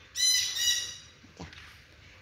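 A bird's call: one high, ringing note lasting under a second near the start, fading away.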